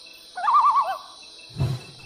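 Night-time nature sound effect: insects chirring steadily, with one short warbling animal call that wavers rapidly in pitch and drops at its end, about half a second in.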